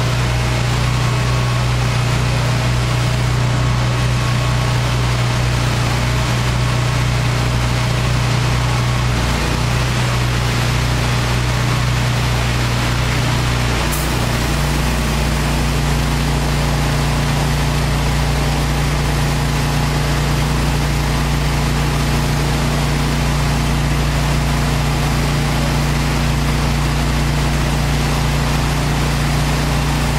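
Hot-water pressure washer trailer running, with a steady engine hum under a hiss of spray and vacuum recovery from a 30-inch vacuum surface cleaner on concrete. About halfway through there is a click, and the engine's hum shifts to a higher note.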